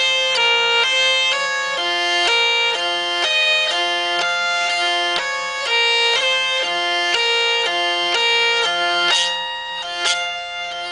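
Hungarian hurdy-gurdy (tekerő), its wheel cranked by hand, playing a folk melody in stepped notes over a continuous drone. A sharp stroke sounds near the end.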